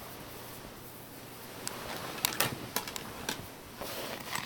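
A handful of short, sharp taps and clicks at uneven intervals over faint room hiss, starting about halfway through.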